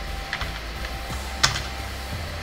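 Computer keyboard keys being typed: a few light keystrokes, then one sharper key press about one and a half seconds in, as a terminal command is entered. Background music plays throughout.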